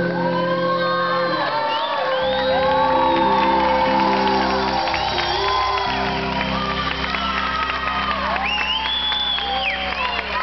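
A live pop-rock band of electric guitar, bass, keyboard and drums playing long held chords, with the audience shouting and whooping over the music.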